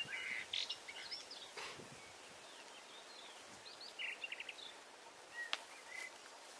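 Small birds chirping faintly in scattered short calls, with a quick run of notes about four seconds in, over a quiet outdoor background hiss.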